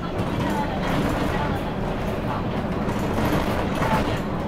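Inside a moving city bus: steady engine and road noise in the cabin.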